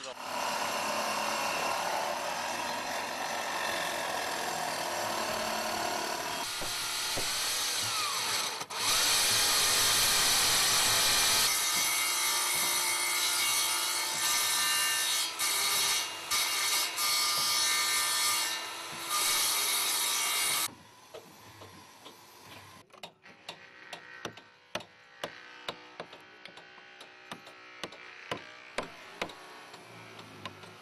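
A hand-held electric power saw cutting into the wooden hull timber of a small boat, running loud and steady with its note shifting as it bites. About twenty seconds in it stops, and a run of quick, light taps of a hand tool on wood follows.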